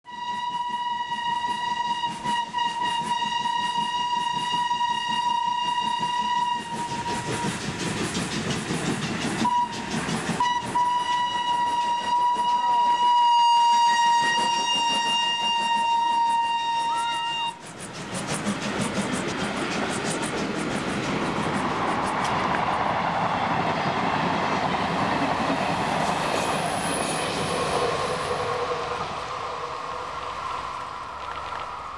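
Railway sounds: a long steady high tone with clattering wheels on rail joining in part way through, cutting off abruptly after about seventeen seconds; then the rushing, rumbling noise of a train going by.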